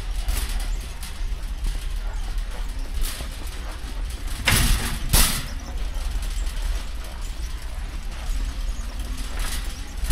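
Metal shopping cart rolling on a concrete warehouse floor, a steady low rumble with wheel and basket rattle, and two louder noisy jolts about halfway through.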